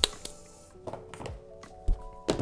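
Background music with a few sharp clicks and knocks from a clear plastic storage tub and its lid being handled, ending in a dull thump.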